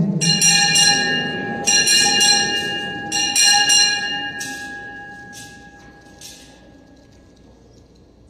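Altar bells (Sanctus bells) rung at the elevation of the chalice, marking the consecration. They are shaken in three bright peals over the first four seconds, then struck a few fainter times, and the ringing dies away.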